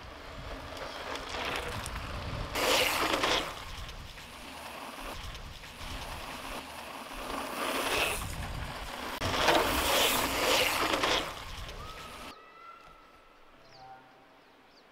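Wind rumbling on the microphone, with three louder rushing swells as mountain bikes pass close on gravel, about three, eight and ten seconds in. The wind noise cuts off suddenly near the end.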